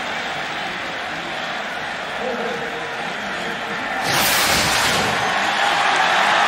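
Steady stadium crowd hubbub. About four seconds in, a broadcast whoosh sweeps through as the ESPN replay wipe graphic crosses the screen. After it the crowd is louder.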